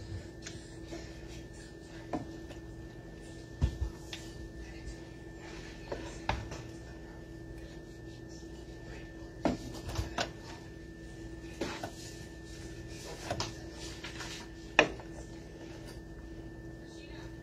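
A spoon stirring and scraping pasta in a large skillet, with irregular light knocks of the spoon against the pan every second or two, the loudest near the end. A steady faint hum underneath.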